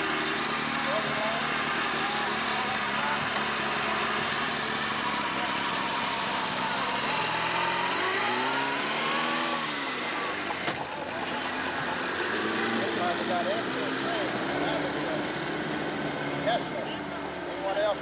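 Small outboard motors running on the river with a steady drone. About eight to ten seconds in, one engine's pitch climbs and then falls again. Voices talk in the background.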